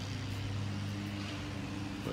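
Steady low mechanical hum of a motor or engine running, holding one even pitch.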